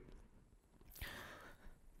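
Near silence, with one short, faint breath into a close microphone about halfway through, fading within half a second.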